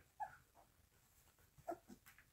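Faint, brief squeaks from two-and-a-half-week-old poodle puppies: one just after the start and a couple more near the end.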